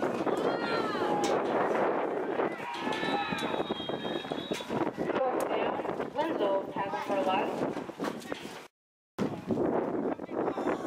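Spectators and players shouting and cheering over one another during a youth football play, with a referee's whistle blowing for about a second and a half around three seconds in. The sound cuts out for a moment near the end.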